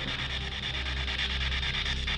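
Spirit box sweeping through radio frequencies: steady white-noise radio static, chopped finely and evenly as it scans, over a low steady hum.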